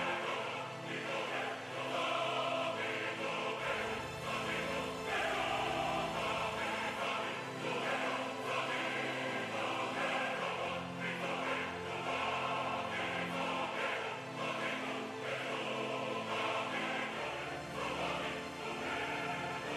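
Background music of a choir singing sustained, slow chords in a sacred, church style.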